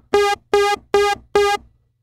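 Moog Sub 37 analog monosynth playing four short, repeated notes of the same pitch, each starting sharply. Keyboard reset is on, so both oscillators restart in phase at every key press, which gives the notes their clean, pronounced attack.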